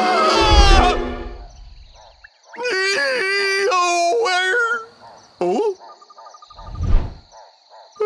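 A cartoon frog character's long, wavering, wordless groan, followed by a short grunt. Before it, music ends on a low thud; a second low thud comes near the end, over a faint, steady, high background tone.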